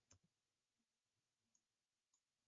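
Near silence, with a very faint click just after the start.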